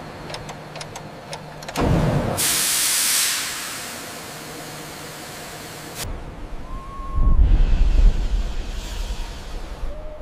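Ship's boiler valve opened: a low machinery hum, then a thud about two seconds in and a loud rush of hissing steam that dies away over a few seconds. After that, a deep, uneven rumble that swells and eases off.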